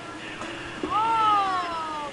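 A cat meowing: one long meow, about a second in, that rises sharply and then slides slowly down in pitch.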